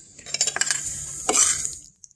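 A metal spoon scraping and stirring through mashed potatoes on a plate, a scratchy run of sound that is loudest a little past halfway and stops just before the end.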